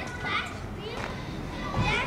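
Children's voices: high-pitched calling and chatter, with a louder call near the end.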